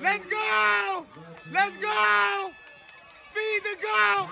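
A spectator's high-pitched voice yelling three long shouts about a second apart, cheering on a ball carrier during a long run.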